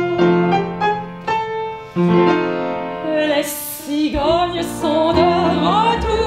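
Live acoustic chanson: piano, with double bass, plays a short passage. About halfway through, a woman's voice comes in singing with vibrato over the accompaniment.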